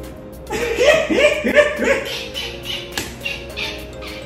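A man bursting into loud laughter about half a second in, a quick run of ha-ha bursts that fades into lighter chuckles, over soft background music.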